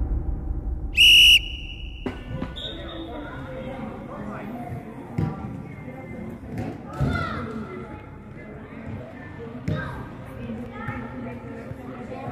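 A whistle: one short, loud, shrill blast about a second in, then a fainter, higher blast a second and a half later. After that, football kicks knock now and then in an echoing indoor sports hall, over faint children's voices.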